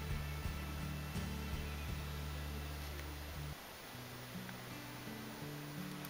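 Quiet background music of low held notes that shift every second or so, the lowest notes dropping out about three and a half seconds in, with a few faint clicks.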